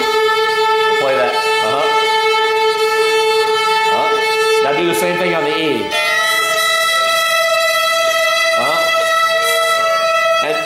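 Fiddle bowing long held notes doubled in unison: an open A string sounded together with the same A stopped by the fourth finger on the D string. About six seconds in it changes to a higher held note.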